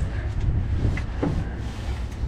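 The latch and hinged diamond-plate aluminum lid of a boat's fish box being opened by hand: a couple of faint clicks about a second in, over a steady low rumble.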